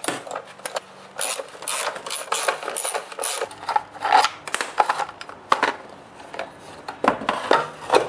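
Irregular metallic clinks, scrapes and rattles as the belt-cover nuts, the cover and the drive belt are worked off the blade arm of a Husqvarna K760 cut-off saw by hand. The sounds come in busy clusters near the start and again near the end.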